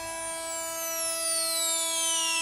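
Electronic intro sound effect: a held synthesizer chord with a high sweeping tone gliding slowly downward in pitch.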